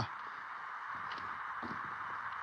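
A steady, faint hiss with a few soft knocks, about one a second.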